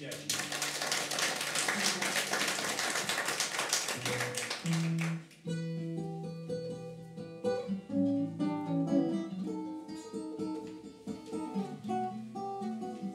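Audience applause for about five seconds, stopping abruptly. Then a classical guitar begins a slow, finger-picked instrumental intro of single notes.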